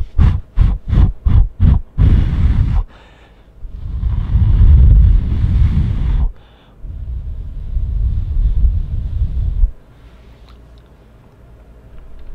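Close-up noise picked up by a Rode VideoMic shotgun microphone in its furry windscreen. About six quick low thumps come in the first two seconds, then a short burst and two long, low rumbling noises of several seconds each, the second stopping about ten seconds in.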